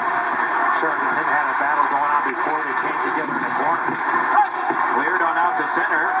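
Broadcast ice hockey commentary: a commentator talking through a television's speaker.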